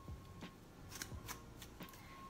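Faint rustling of synthetic Cuban Twist braiding hair being combed apart with a plastic wide-tooth comb to split the fused ends, with about four short, sharp scratches in the second half.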